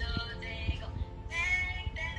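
Background music: a song with an electronically processed singing voice over steady held notes.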